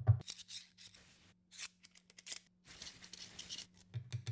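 Holdfasts and an oak board being repositioned on a wooden workbench: several short scratchy rubbing and scraping sounds over a faint steady hum, after a rapid run of knocks that stops just after the start.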